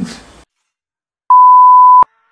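A loud, steady single-pitch electronic beep at about 1 kHz, the standard bleep sound effect, starting about a second and a quarter in and lasting under a second. It follows a short stretch of dead silence after a voice fades out.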